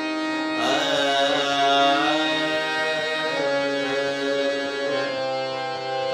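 Harmonium playing held notes while a man sings a phrase of Raag Todi over it. The voice glides between notes, coming in about half a second in and again about halfway through.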